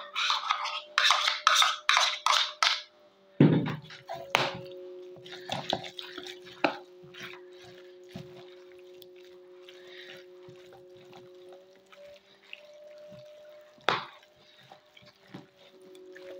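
A spoon scrapes salad dressing out of a bowl onto shredded turnip, a quick run of sharp scrapes in the first three seconds. Then come softer wet squelching and rustling as hands mix the dressing through the turnip pieces.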